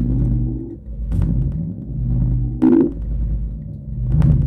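Live electronic noise music from a self-made electronic instrument: a steady low drone under pitched tones that glide and swoop up and down every second or so, with short crackling noise bursts about a second in and near three seconds, the second one louder.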